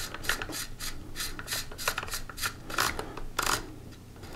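Aluminium magazine tube extension being screwed by hand onto a Mossberg 590 shotgun's magazine tube against the magazine spring: a run of irregular metal clicks and scrapes, about three a second, as the threads turn.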